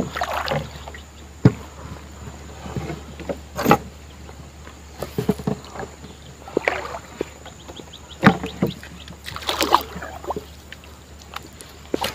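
Small wooden canoe being paddled slowly: irregular sharp knocks of the paddle and gear against the wooden hull, with short splashes and drips of water between them.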